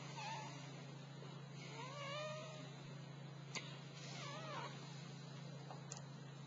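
A cat meowing twice: a drawn-out, wavering call about two seconds in and a shorter one just after four seconds. A couple of sharp crackles come from the small wood fire.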